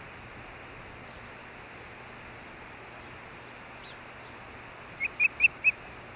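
Osprey giving four short, loud chirping calls in quick succession near the end, over a steady background hiss.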